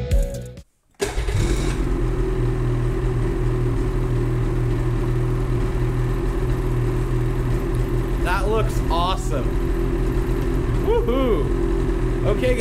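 Background music cuts off, and after a moment of silence a Ski-Doo Gen4 snowmobile engine idles steadily. A voice is heard briefly twice near the end.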